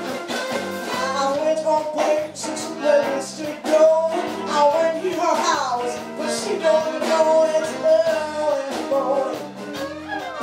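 A small live blues band playing: a woman singing into a microphone over electric guitar and bowed violin, with a stepping bass line underneath.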